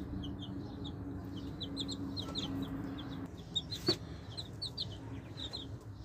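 Baby chicks peeping: many short, high, downward-sliding peeps, often in quick pairs, repeated steadily. A single sharp click stands out about four seconds in.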